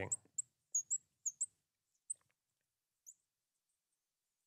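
Marker squeaking on a glass lightboard as a word is written: a series of short, high squeaks, most of them packed into the first second and a half, then two more spaced out.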